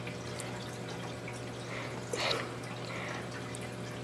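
Reef aquarium water trickling and dripping steadily over a low, even hum, with a brief soft swish about two seconds in.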